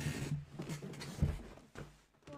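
Clothing rustling and shuffling as a person drops back into a padded office chair, with one dull thump about a second in.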